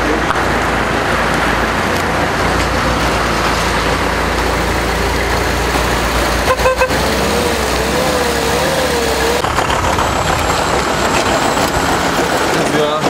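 Road traffic noise of cars driving past on a wet road. About six and a half seconds in comes a short car-horn toot, followed by a wavering tone for about two seconds.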